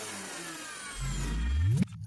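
Synthesized logo-animation sound effects: thin high tones gliding downward in pitch, then a low swell that rises steadily in pitch and loudness for about a second and cuts off suddenly near the end.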